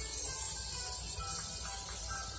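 A light-up fidget spinner spinning in the hand, its bearing giving a steady high hiss with faint squeaks. The bearing squeaks even though the spinner is brand new.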